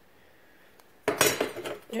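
Thin sheet-steel repair pieces clinking and rattling against each other as they are handled, in a burst of about a second that starts halfway through.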